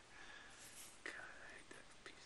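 Near silence: faint room tone with soft breathy noise.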